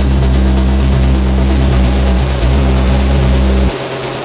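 Industrial techno in a continuous DJ mix: a heavy, droning bass under a quick, steady hi-hat pattern. The bass drops out suddenly near the end, leaving only the hi-hats for a moment.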